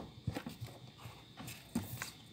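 Faint, scattered light taps and clicks, about half a dozen over two seconds, from flashcards being handled and swapped.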